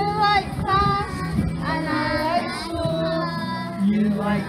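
A group of young children singing a song together over recorded backing music with steady low sustained notes.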